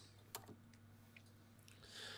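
Near silence with a few faint clicks, the clearest about a third of a second in, from the front-panel knobs of a Cobra 148 GTL-DX CB radio being turned by hand, over a low steady hum.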